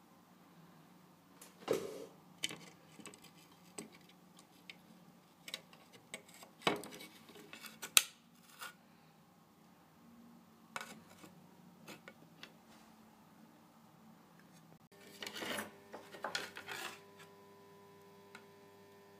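Scattered clicks and taps of small electronic components being handled against a circuit board, with a denser run of handling clicks near the end.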